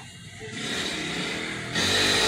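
An engine running, starting about half a second in and growing louder, with a further jump in loudness near the end.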